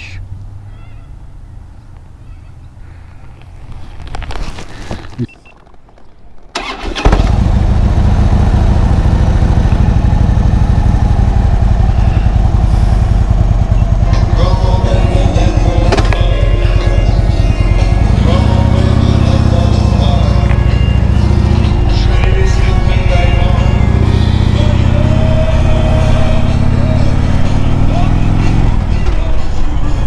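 After a quiet first few seconds, a Harley-Davidson touring motorcycle's V-twin engine is heard from about seven seconds in, running loudly as the bike is ridden off, with the revs rising and falling through the gears.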